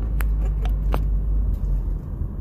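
Car cabin rumble while driving: a low engine and road drone heard from inside the car, easing near the end. A few short sharp clicks sound within the first second.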